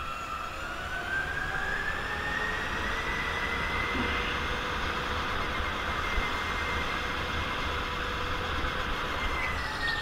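Go-kart's drive whine, a single high tone that rises in pitch as the kart picks up speed, holds steady, then drops near the end as it slows for a corner.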